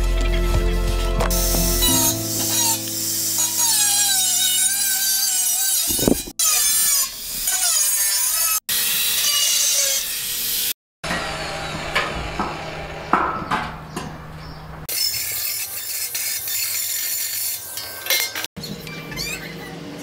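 Electric angle grinder with a thin cutting disc cutting through the steel top of an oil drum, its whine wavering as the disc bites, in several short stretches that stop abruptly.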